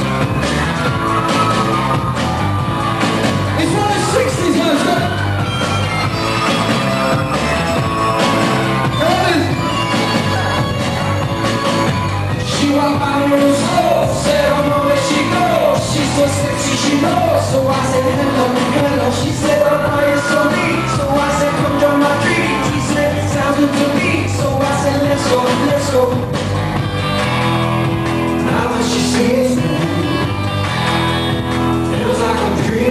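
Pop song: a male singer over a band with a steady beat.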